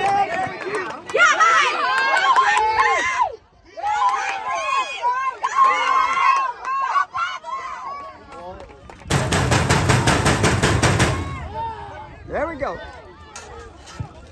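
High-pitched shouting voices on a football pitch. About nine seconds in, a rapid, even rattling clatter cuts in for about two seconds, then the voices return, quieter.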